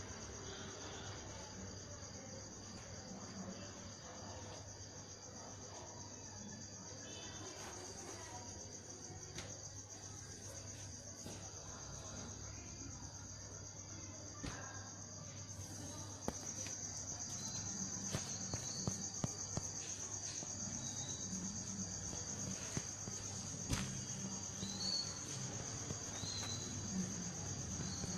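Steady high-pitched chirring of crickets, over a low hum. Scattered light ticks come through, growing a little louder and more frequent about sixteen seconds in.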